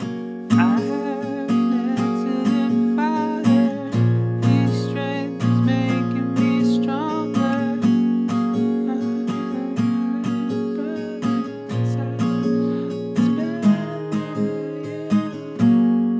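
Acoustic guitar with a capo at the sixth fret, strummed steadily in a regular rhythm. It plays the bridge's long stretches on a C chord and then an E minor chord.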